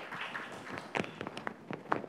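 Footsteps on a hard floor as a person walks away: a string of irregular taps and knocks, with a brief rustle at the start.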